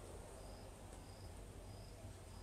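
Faint room hiss with a soft, high-pitched chirp repeating about twice a second.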